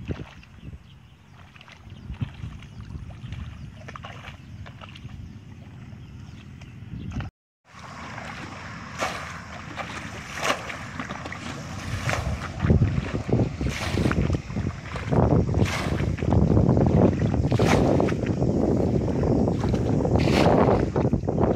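Muddy paddy water splashing as a plastic bucket is repeatedly scooped and flung out: bailing water from a flooded rice-field pool to drain it. A splash comes about every one and a half to two seconds, growing louder in the second half. Before a short dropout about seven seconds in, there are quieter sounds of a hoe working wet mud.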